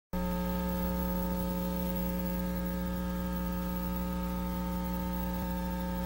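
Steady electrical mains hum with a buzzy stack of overtones, cutting in sharply at the very start and holding unchanged.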